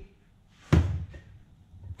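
A single solid metal knock about three-quarters of a second in, as a steel camshaft is set down on the cylinder head or bench, dying away quickly, followed by a faint tap.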